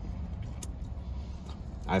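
Low steady rumble inside a parked car's cabin, with a faint click about half a second in. A man's voice starts a word right at the end.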